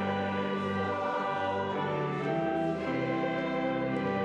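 Church choir singing with instrumental accompaniment in slow, long-held chords.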